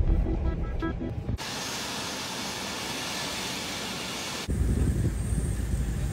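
A musical sting fades out about a second in and gives way to a steady hiss. Later a jet airliner's engines take over, a low rumble with a steady high whine.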